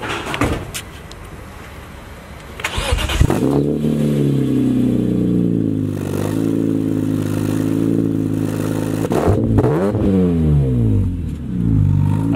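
BMW E46 M3's S54 straight-six, breathing through a Top Speed muffler with an added resonator, cranks and starts about three seconds in. It flares up briefly and settles into a steady idle, then is revved twice near the end.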